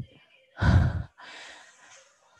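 A woman's tired sigh while stretching arms worn out from exercise: a short voiced 'ahh' followed by a longer, softer breathy exhale.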